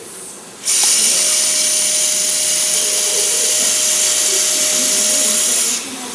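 Surgical power drill running steadily at high speed, driving a Kirschner wire (K-wire) across the fracture to fix it. It starts just under a second in, keeps one steady tone, and stops shortly before the end.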